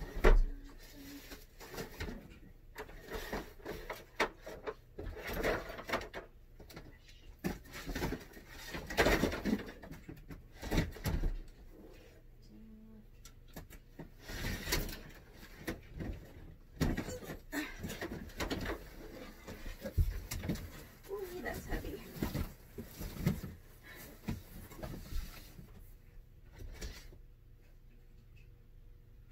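Rummaging out of view: a sharp thump at the very start, then scattered knocks, bumps and rustling as things are moved about and pulled out of a closet.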